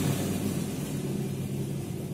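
Steady low background hum and rumble, slowly getting quieter.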